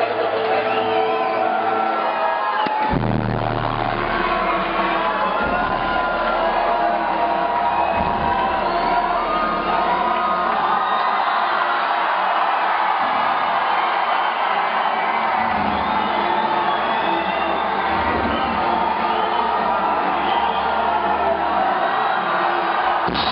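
Loud music with a crowd cheering and whooping over it; deep bass comes in about three seconds in.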